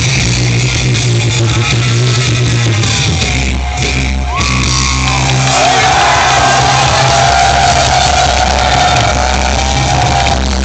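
Live rock band and singers performing an anime theme song, recorded in a hall. A brief drop about three and a half seconds in, then a long held note through the second half.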